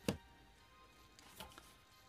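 Plastic DVD cases knocking as they are slid onto a wooden shelf and picked up: one sharp click just after the start and a fainter one past the middle.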